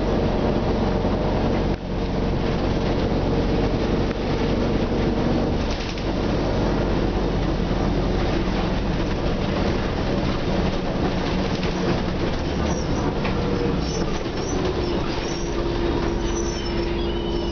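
Nova Bus RTS transit bus's diesel engine and drivetrain heard from inside the passenger cabin while the bus drives: a steady, deep drone, with a short drop in level about two seconds in and a step down in pitch near the end.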